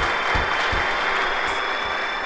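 Audience applause, an even clatter, with the last notes of the intro music fading under it and a few low thumps in the first second.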